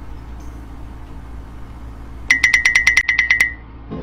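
An electronic ringtone-like trill starts a little past halfway: a rapid run of beeps on one high pitch, about eight a second, lasting about a second, over a low steady hum.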